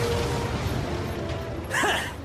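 Anime fight sound effects: a loud, rushing, noisy whoosh with a low rumble as the combatants clash, thinning out about a second and a half in.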